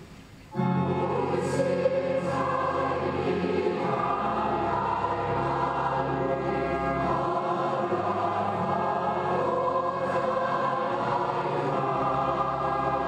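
Recorded choral music: many voices singing sustained chords, cutting in abruptly about half a second in.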